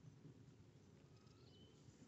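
Near silence: faint outdoor background, with a couple of faint, short high chirps about halfway through.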